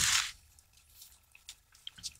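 Hands pressing a raw pastry top crust onto a filled pie: a brief soft rush at the start, then a few faint, soft ticks of fingers on dough and pan.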